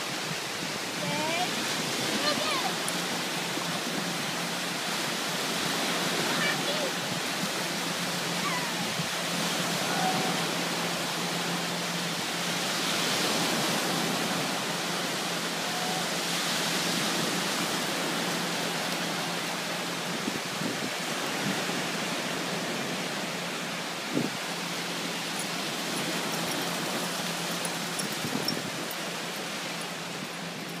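Small waves breaking and washing up a sandy beach: a steady rushing wash that swells twice around the middle. Faint voices and a low steady hum sit underneath.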